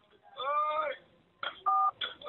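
A man crying out "ai!" in pain over a telephone line, suffering agonizing stomach pains. About a second and a half in there is a click and then a short two-tone telephone keypad beep.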